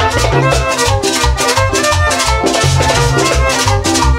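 Chanchona band playing cumbia without vocals: a bouncing bass line and melody instruments over a steady beat of rattling hand percussion.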